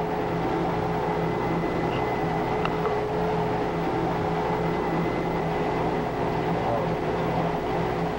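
Magnetic tape unit of a GE 210 computer running at speed: a steady machine whir and hum with its reel spinning fast.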